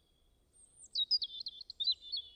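A songbird singing: a quick, jumbled run of high chirping notes that starts about half a second in and is loudest in the second half.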